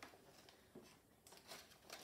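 Near silence: quiet room tone with a few faint clicks from a plastic blister tray of trading cards being handled.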